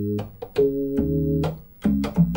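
Alpha Syntauri digital synthesizer, an Apple II-based 8-bit digital synth, playing its percussion organ preset. Two chords are held, each starting with a short click and lasting up to about a second, the second with a deep bass note under it.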